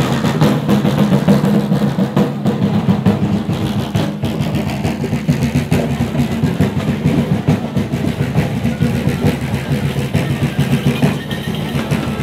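Large rope-tensioned Sicilian folk drums beaten in a fast, continuous, densely packed rhythm by marching parade drummers.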